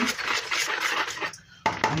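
Water being stirred by hand in a plastic mixing bowl: a swishing, scraping noise that runs for about a second and a half and then stops.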